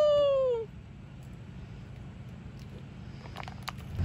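The tail of a man's long drawn-out celebratory shout of "Yo!", held and sliding down in pitch until it stops under a second in. Then a quiet outdoor background with a few faint clicks near the end.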